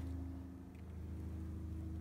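Steady low background hum with a few faint level tones, no tool strikes or other events; the pitch of one faint tone shifts slightly about a second in.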